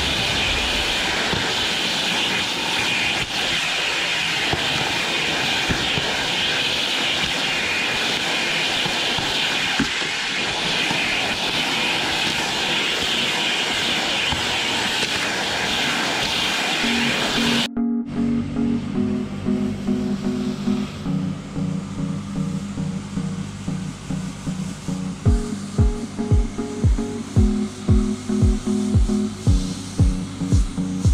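A vacuum running with a crevice tool drawn over carpet, a steady rushing suction noise. It cuts off sharply after about 18 seconds and background music takes over, with a regular beat coming in near the end.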